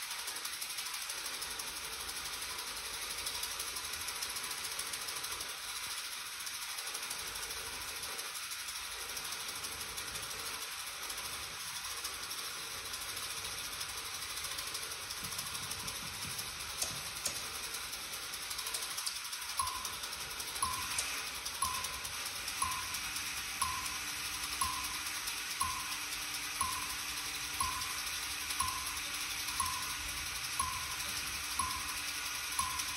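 Dense, steady mechanical rattling and clicking from objects and tape in a live musique concrète piece. About twenty seconds in, a regular click about once a second sets in, and a few seconds later a low steady hum joins it.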